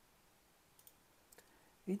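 Two faint computer mouse clicks, a little over half a second apart, over quiet room tone.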